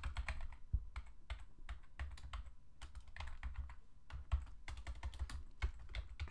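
Typing on a computer keyboard: quick, irregular keystrokes with a few harder taps, as a method name and its braces are keyed into a code editor.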